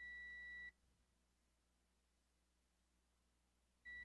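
Multimeter continuity beeper: one steady high beep lasting under a second as the test probes touch the graphics card's circuit, then a second, brief beep near the end. Each beep signals a connected, low-resistance path between the probed points.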